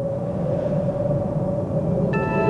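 Low, steady rumbling sound effect with a single held tone above it, from a TV commercial's soundtrack.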